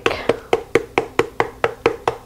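Spice jar with a plastic shaker lid shaken over a measuring cup, a quick even run of sharp clicks, about four to five a second.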